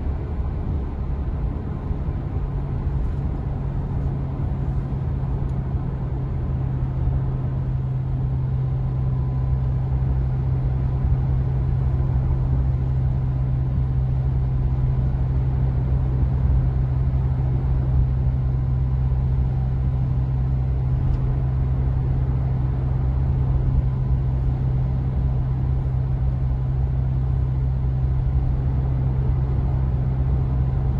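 Steady low drone of engine and tyre-on-road noise heard inside a car's cabin while cruising at highway speed.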